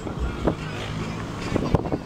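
Car driving along a road, its engine and road noise heard from inside the car, with irregular knocks and bumps.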